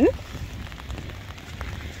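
Rain falling on a fabric umbrella held just overhead: a steady hiss with many small drop ticks, over a low rumble.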